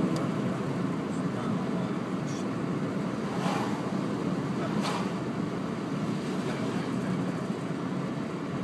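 Steady road and engine noise heard inside a moving car's cabin, with two brief swells about three and a half and five seconds in.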